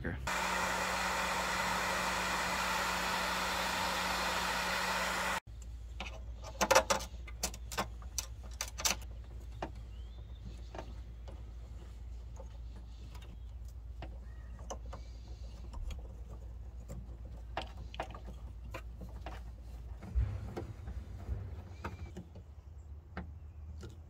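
A loud, steady hiss with a low hum for about the first five seconds, cut off abruptly. Then scattered light clicks and metallic taps of hand work on wire lugs and a bus bar, with a screwdriver.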